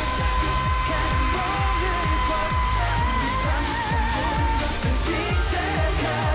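K-pop song: a singer holds one long high note that breaks into vibrato about three seconds in, over a steady beat of deep bass drum hits.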